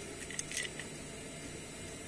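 A few faint light clicks of small parts being handled on the heater's circuit board, at the transistor and its metal clip, over a steady low hiss.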